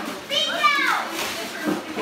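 A child's high-pitched squeal, rising then falling and about half a second long, over the chatter of children and adults in a room.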